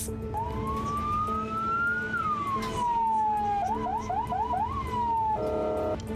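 Emergency vehicle siren: one slow wail that rises for about two seconds and falls back, then a quick run of about five short rising yelps, over a faint steady music bed. A brief steady chord-like tone comes in near the end.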